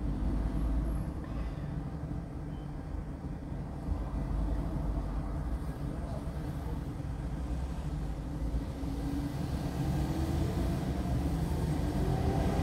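Steady low rumble of city traffic heard from inside a parked car. Near the end, a nearby vehicle's engine note rises slowly as it accelerates.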